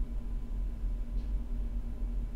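Steady low hum with a faint higher tone over it: background room tone, with nothing else happening.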